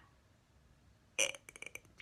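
A woman's short mouth sound about a second in, then a few quick lip and tongue clicks, as she pauses before speaking again; the first second is near silence.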